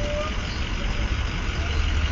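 A steady low rumble with a faint hiss above it, unchanging throughout.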